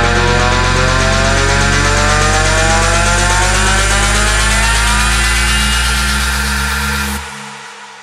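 Electronic dance music build-up: a loud synth riser sweeping steadily upward in pitch over a sustained deep bass, cutting off suddenly about seven seconds in and leaving a fading tail.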